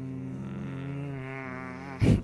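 A man humming a long, steady, closed-mouth "hmm" while waiting, its pitch wavering slightly in the second half.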